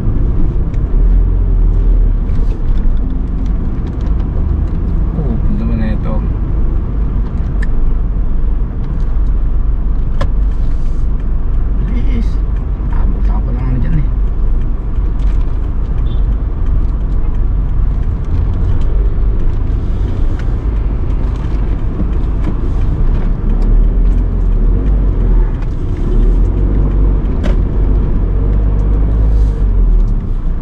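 Steady low rumble of a car's engine and tyres while driving through city streets, heard from inside the cabin.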